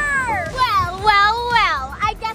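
A girl's high-pitched, drawn-out voice in long notes whose pitch slides down and then up and down again, as in a whiny, exaggerated 'well…'.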